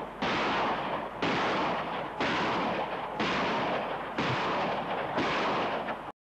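Valkiri 127 mm multiple rocket launcher ripple-firing: six rockets launch one after another, about one a second. Each launch is a sudden rushing blast that carries on until the next.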